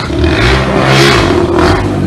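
A car engine revving up and easing off, with a rush of noise that peaks about a second in as the vehicle moves close by.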